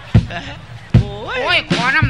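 Three heavy, low thumps about three-quarters of a second apart, each sudden, with a man's exclaiming voice rising in pitch in the second half.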